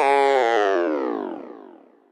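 The closing synthesizer notes of a hip-hop beat, with no drums or bass, getting duller and fading out to silence by the end.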